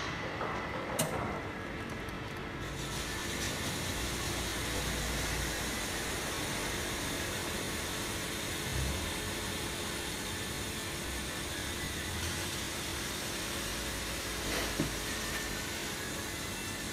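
High-temperature steam vapour hissing steadily from a cleaning wand inside an oak wine barrel. The hiss opens up about two and a half seconds in, just after a click.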